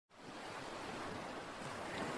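A soft, steady rushing noise, like wind or surf, fading in from silence at the very start.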